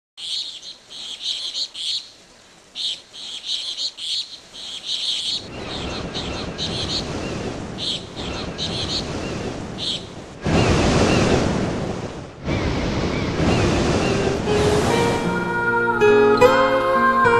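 Birds chirping in short, repeated calls over the sound of surf, which builds up and breaks loudest about ten seconds in, with another surge a couple of seconds later. Acoustic guitar music starts near the end.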